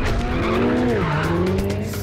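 Ferrari 488 Pista's twin-turbo V8 sliding through a corner with its tyres squealing. The engine note drops about a second in, then climbs slowly again.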